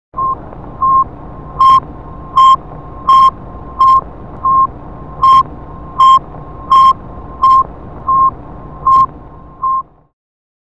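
A run of about thirteen short, loud electronic beeps, all at the same high pitch and a little under a second apart, over a faint steady tone and low hum. The loudest beeps sound harsh and distorted.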